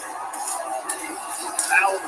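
Football TV broadcast audio: a play-by-play announcer's voice over steady background noise, with a short call near the end.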